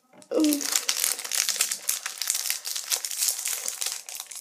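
Foil wrapper of a Match Attax trading-card pack crinkling and crackling without a break as it is twisted and pulled open by hand.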